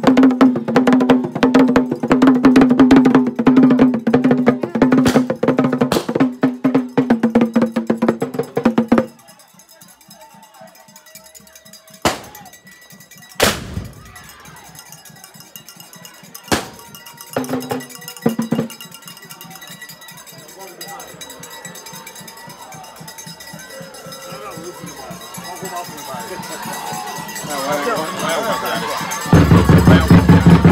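A drum slung from the shoulder, beaten fast with two curved wooden sticks, loud and rhythmic, stops abruptly about nine seconds in. After that come a few sharp isolated knocks and clicks and two single low drum strokes, with voices growing louder near the end.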